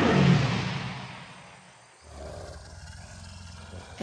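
A loud monster roar sound effect that dies away over about two seconds, followed by a low steady rumble.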